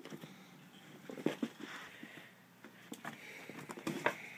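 A cat scuffling and rolling on carpet while playing with a catnip toy: irregular soft thumps and rustling, with the loudest knocks a little past a second in and near the end.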